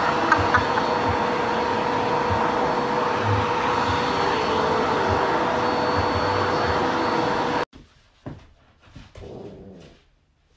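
Vacuum cleaner running steadily with a constant whine while its brush attachment is worked over a puppy's coat. It cuts off abruptly about three-quarters of the way through, leaving a few faint short knocks and rustles.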